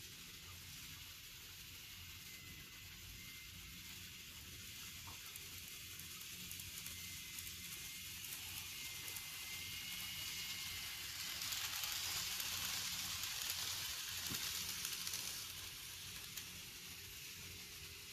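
N scale model train running on the layout's track: a faint hiss of small wheels on rail with a thin motor whine. It grows louder, is loudest about two-thirds of the way through, then fades as the train passes and moves away.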